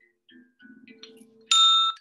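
A single bright metallic ding about one and a half seconds in, several clear tones at once, stopping short after about half a second.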